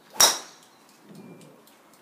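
Small-headed golf club striking a ball off the grass: one sharp metallic crack about a quarter second in, with a short ring.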